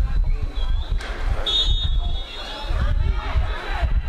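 A referee's whistle gives one short blast about a second and a half in, over a constant low rumble and players' or spectators' voices.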